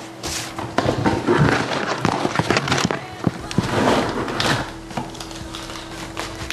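A hand rummaging through paper entry slips in a cardboard box: irregular rustling with scattered knocks and clicks against the box.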